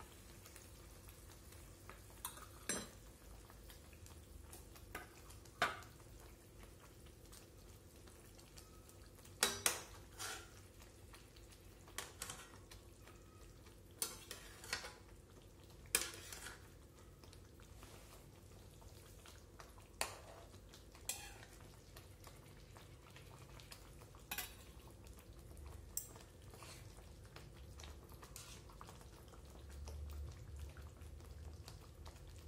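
A spatula knocks and scrapes against a wok now and then, about a dozen sharp, irregular clicks. Under them is a faint steady sizzle of fried eggs cooking in fish sauce.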